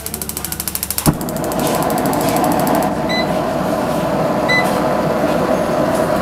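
Electronic igniter of a Gazi stainless steel gas stove clicking rapidly, about a dozen sparks a second, until the burner catches with a sharp pop about a second in; the gas flame then burns with a steady rush. Two short electronic beeps from the stove's control panel come a few seconds later.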